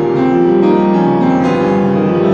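Piano music, several sustained notes ringing together with new notes struck through it, played on a piano tuned by the entropy tuning method, which the tuner credits with a clearer, sharper sound than traditional tuning.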